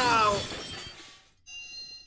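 Cartoon sound effects: a short falling cry over a crashing, shattering hit that fades away. About a second and a half in, a bright magical chime rings as the puzzle symbol lights up.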